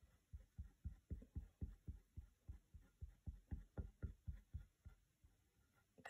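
Quiet, quick strokes of a squeegee rubbing chalk paste through a silk-screen transfer onto a wooden box frame, about four strokes a second, stopping near the end.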